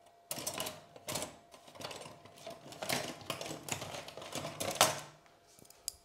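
Irregular rustling and clicking from hands working over a Japanese black pine bonsai, handling its needled branches and wire while they are arranged and wired flat. The sounds come in uneven clusters of short clicks and stop just before the end.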